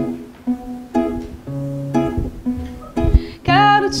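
Two acoustic guitars playing a gentle chord intro, a chord struck about twice a second. A woman's voice starts singing near the end.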